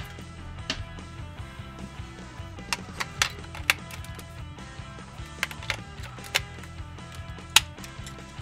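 Background music, with scattered sharp plastic clicks and taps as batteries are handled and fitted into a toy gun's grip battery compartment; about nine clicks, the loudest near the end.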